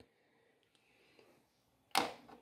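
Near silence, then a single sharp tap near the end as a small white plastic spray-gun part is set down on a hard tabletop.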